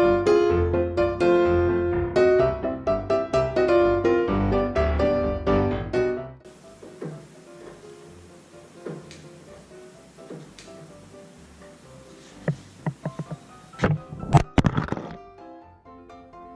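Background music that stops about six seconds in, followed by faint workshop knocks. Near the end comes a quick run of sharp knocks and a loud clatter: a suction-cup-mounted GoPro camera dropping off the car onto the concrete floor.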